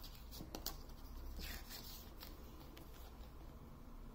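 Photobook pages being handled and turned by hand: a few soft paper clicks and a brief paper rustle about a second and a half in.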